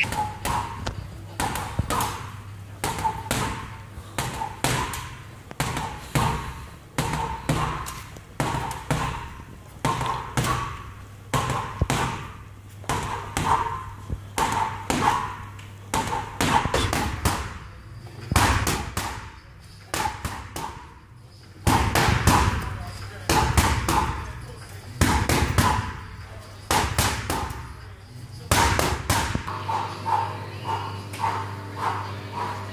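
Boxing gloves striking a hanging heavy punch bag in a long run of thuds, about two a second, broken by a few short pauses.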